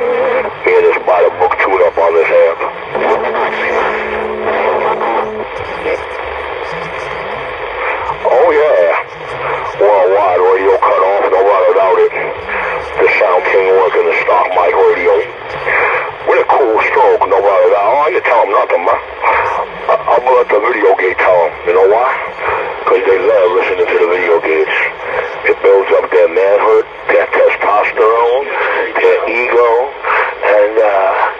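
Several voices talking over a Magnum S-9 radio's speaker: narrow, tinny transmitted speech with a hiss of static underneath. A steady low tone runs under the voices for the first five seconds or so.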